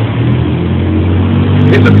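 A steady low engine hum, like a vehicle running at idle, continuing without a break.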